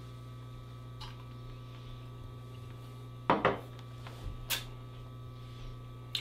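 Steady low electrical hum in a quiet small room, broken about three seconds in by two brief sounds close together and a sharp short one about a second later.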